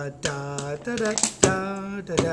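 A man singing a slow melody without words, in held, steady notes, each note cut off by a short, sharp syllable.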